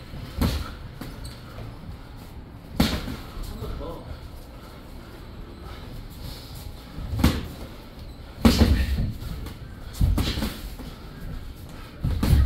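Boxing gloves landing in sparring: several sharp, padded hits a second or more apart, against a low background of movement in the ring.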